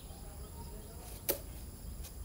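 Skateboard rolling slowly on asphalt with one sharp click about a second and a quarter in, over a steady high-pitched insect drone.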